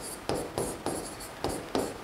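Chalk scratching on a blackboard as words are written by hand, in a quick series of short strokes.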